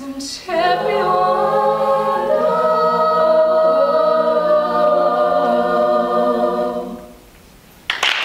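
All-women a cappella group singing the song's final chord, voices held in sustained harmony for about six seconds before it dies away. Applause breaks out just at the end.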